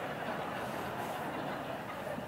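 A theatre audience laughing and murmuring, a steady wash of many voices.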